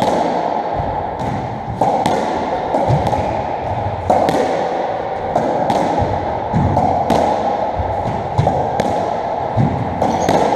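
Squash rally: the ball is struck by rackets and smacks off the court walls, a dozen or so sharp echoing impacts at irregular intervals of about half a second to a second, over a steady background hum in the court.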